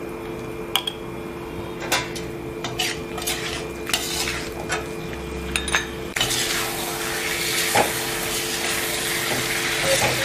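A metal spoon clinks and scrapes against a cooking pan a handful of times. About six seconds in, a loud frying sizzle starts suddenly and keeps going as chicken and masala fry in the pan, over a steady hum.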